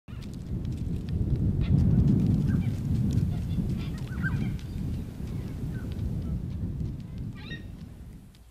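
Birds calling in short scattered chirps over a steady low rumble, with one fuller call near the end.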